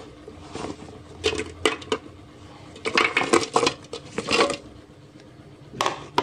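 Garlic cloves, shallots, candlenuts and chilies tipped from a plastic plate into an empty plastic blender jar: several bursts of light clattering knocks and clicks as they drop onto the blade and the plate knocks against the jar.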